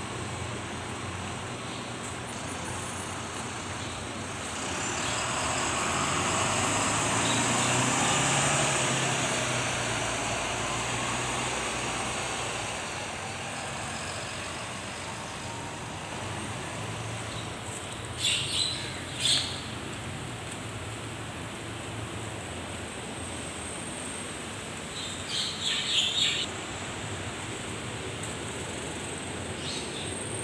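Steady traffic hum at a bus interchange, with a vehicle passing that swells and fades over several seconds a few seconds in. Later come two brief clusters of short bird chirps.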